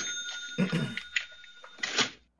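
A man drinking from a glass bottle: swallows and breaths through the bottle, with a faint steady high ringing tone underneath and a few small clicks near the end.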